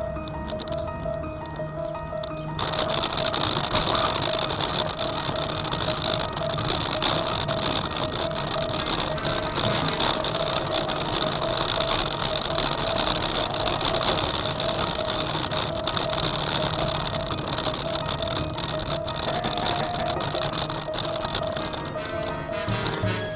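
Background music throughout. From about two and a half seconds in, a loud, dense rattling joins it: a bicycle jolting over paving stones, shaking the camera mounted on it.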